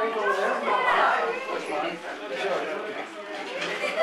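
Indistinct voices talking in the background, a murmur of chatter with no clear words.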